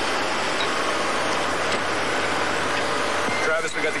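A steady, even rushing noise with no rises or breaks. A man's voice comes in near the end.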